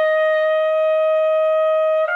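Unaccompanied trumpet holding one long, steady high note.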